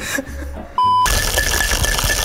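A single short electronic beep, one steady tone lasting about a third of a second. Right after it the sound cuts abruptly to a loud steady hiss with a thin high whine.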